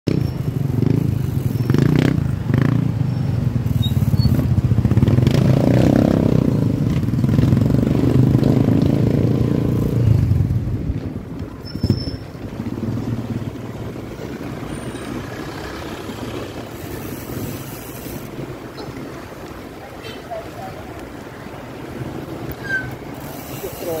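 Street traffic at close range: a motorcycle engine running nearby, loud for the first ten seconds or so, then a lower, steadier traffic hum.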